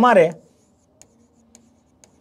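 Pen writing on a board: faint scratching strokes with two short taps about a second in and again half a second later.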